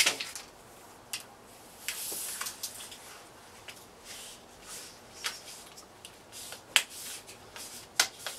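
Vinyl screw-cover trim pressed by hand and snapped into the screw channel of a storm door frame: scattered small clicks with soft rubbing between them, the sharpest click near the end.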